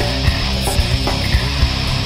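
Nu metal band recording playing: a dense, loud mix of electric guitar and bass over a drum kit, with kick-drum and cymbal hits on a steady beat.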